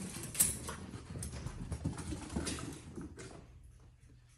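A cat and a corgi chasing each other through a house: quick, irregular patter and thuds of running paws on the floor, with a sharper knock about half a second in.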